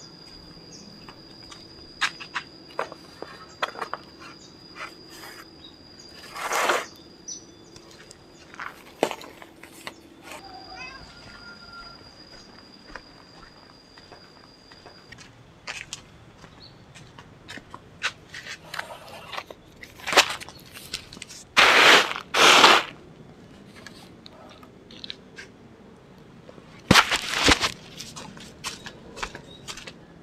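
Woven bamboo trays rustling and scraping as they are carried and set out to dry, with several loud rasping bursts in the second half and many small knocks and footfalls. Behind it, a steady high insect drone runs through the first half, with a few bird chirps.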